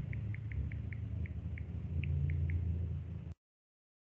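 Steady low rumble of background noise from an open microphone, with a run of about ten short high chirps, roughly four a second. The sound cuts off abruptly to silence about three seconds in.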